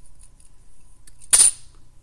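Lego plastic clattering once, short and sharp, about a second and a half in, as the bendable Lego plate platform is set down on a wooden floor.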